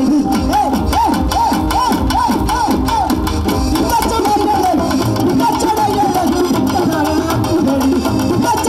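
Live Tamil folk music from a stage band: a lead melody repeating short bending phrases over a drum accompaniment.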